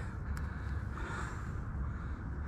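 Steady low rumble with a faint hiss of outdoor background noise, and one faint click shortly after the start.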